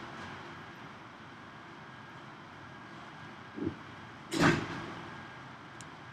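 Quiet lecture-room background noise, with a short low sound about three and a half seconds in and a louder brief noise about a second later.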